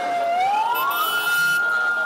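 A police vehicle siren winds up in pitch over about the first second, then holds a steady high wail, over street noise.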